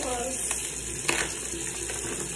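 Plastic pouch of Plackers Twin-Line floss picks crinkling as it is handled and torn open, with a few sharp crackles.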